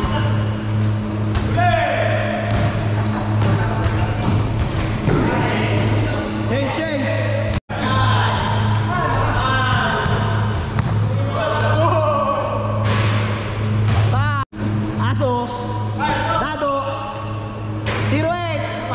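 Basketball bouncing on a hard indoor court during play, with players' shouts and calls echoing in a large hall. A steady low hum runs underneath.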